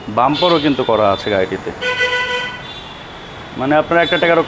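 A vehicle horn sounds once, a short steady toot of about half a second, about two seconds in, between bursts of a man talking.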